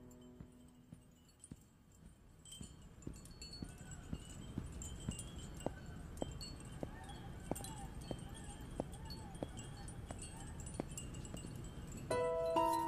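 Chimes tinkling, with scattered light clinks and short ringing tones over a low rumble, sparse at first and busier after about two seconds.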